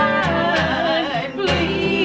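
Three voices, two women and a man, singing in harmony over a strummed acoustic guitar, with a little waver on the held notes.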